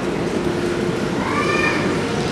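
Steady background hubbub of a large hardware store, with one brief high tone that rises and falls about a second in.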